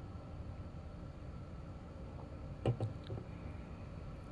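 Low steady room hum while a man sips beer from a glass, with one brief throaty sound from him about two-thirds of the way through.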